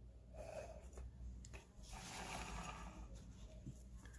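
Faint handling of cardboard trading cards, with a few small clicks and a soft breath close to the microphone.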